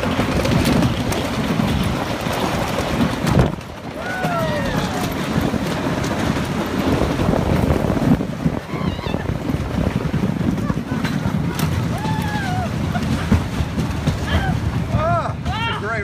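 Blue Streak wooden roller coaster train running along the wooden track, a steady heavy rumble and clatter with wind rushing past the microphone. Riders whoop several times, most of all near the end as the train rolls into the station.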